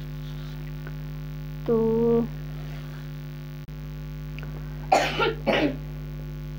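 A woman coughing twice in quick succession near the end, over a steady electrical hum.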